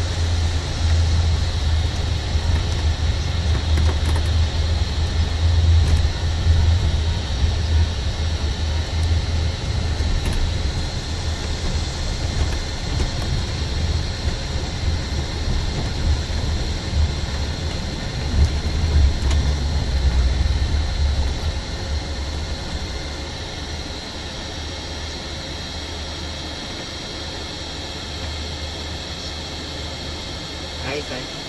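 Bus engine and road noise heard from inside the upper deck while travelling, a steady deep rumble. For the last several seconds it runs lower and steadier as the bus slows toward a red light.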